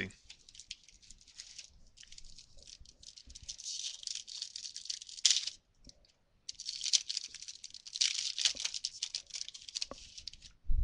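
Foil wrapper of a Topps Prime football card pack crinkling as it is handled and torn open. The crinkling comes in two long stretches with a short pause about halfway.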